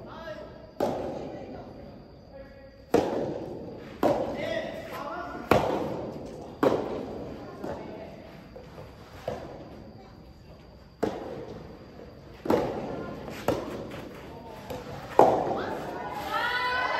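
Soft tennis rally: the rubber ball pops off the rackets and bounces on the court, a sharp hit every one to two seconds, about ten in all. Each hit echoes around the large hall, and the loudest comes near the end.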